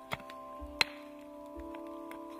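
Background music of held notes, with two sharp strikes of a small hand pick into stony soil, the second, a little before the middle, the louder.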